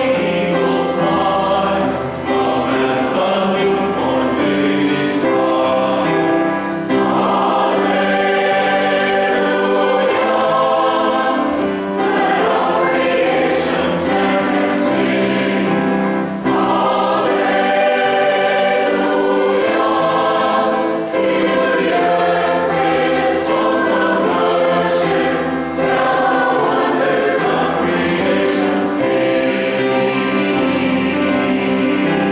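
A mixed choir of men and women singing in parts, in phrases broken by short pauses about every four to five seconds.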